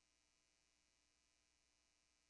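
Near silence: only a faint, steady hiss and hum of the recording's noise floor.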